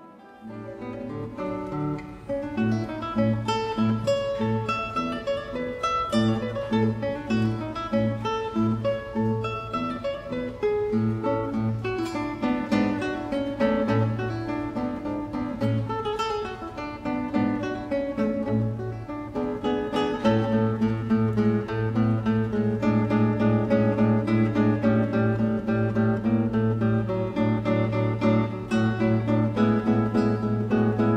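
Classical guitar played solo, fingerpicked: a melody over recurring bass notes. About two-thirds of the way in, a steady rapid repeated bass note runs under the melody.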